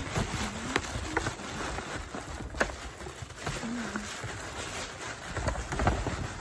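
Tissue paper rustling and crinkling as it is pushed into a paper gift bag, with a few sharper crackles, the loudest about two and a half seconds in and a cluster near the end.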